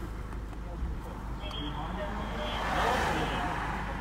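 A vehicle passing by a stopped car: a rush of noise that swells and fades about three seconds in, over a steady low hum.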